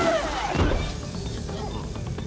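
Film sound-effects mix: a laugh trails off at the start, then a glassy shattering, tinkling effect runs over background music as the protoplasm sparkles form into a creature.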